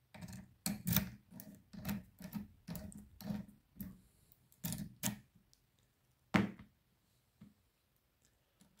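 A padlock being handled: a run of short metallic clicks and knocks, thickest in the first five seconds, with one sharp, loud click a little after six seconds.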